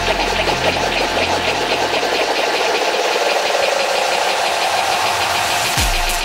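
EDM dance track in a build-up: the bass drops out about two seconds in, leaving a rising, thickening mid-range build over a steady rapid pulse. A falling low sweep comes near the end, just before the beat drops back in.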